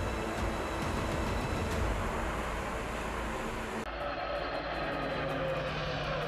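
Steady, even roar of a US Navy LCAC hovercraft running over water, its gas turbines and spray blending together. About four seconds in it cuts to the duller, steady engine hum of an eight-wheeled armoured vehicle driving.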